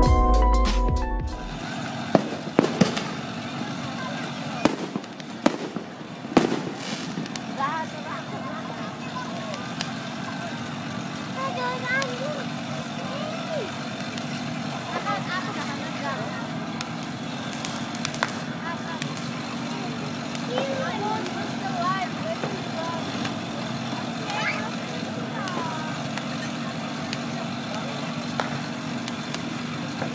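Intro music ends in the first second or two, giving way to children's voices and chatter against a steady low hum. Several sharp pops or snaps come in the first few seconds.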